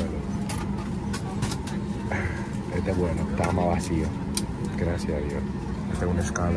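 Steady low hum of a Boeing 737 airliner cabin, with passengers' voices in the background and a few light clicks.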